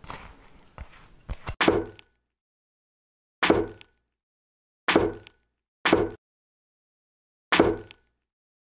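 Knife chopping through modelling clay onto a plastic cutting board: five short, sharp thuds a second or so apart, with dead silence between them.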